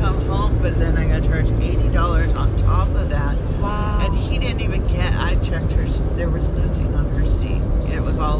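Steady low rumble of a car's road and engine noise heard from inside the cabin while driving, with a few short snatches of voice in the middle.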